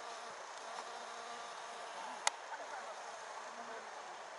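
A flying insect buzzing around flowering hydrangeas over a steady outdoor background, with one sharp click a little over two seconds in.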